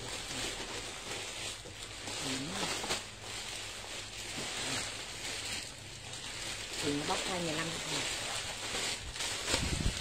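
Clear plastic garment bags crinkling and rustling as clothes are handled and pulled out of their packaging, with short, quiet bits of voice about two seconds in and again around seven seconds in.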